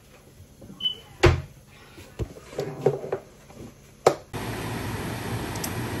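Two sharp knocks, about a second in and about four seconds in, with light handling clatter between them; then a steady low hum and hiss starts suddenly a little after the second knock.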